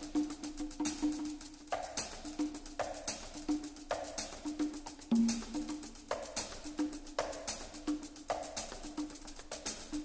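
Percussion-only groove: hand drums (congas) with short pitched tones, a shaker, and the drum kit's stick clicks, in a steady rhythm with a strong accent about every 0.8 seconds. This is the percussion introduction before the rest of the band comes in.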